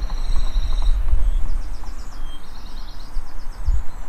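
A nature soundscape of birds chirping in quick, high, repeated trills over a loud, uneven low rumble, with one longer held trill in the first second.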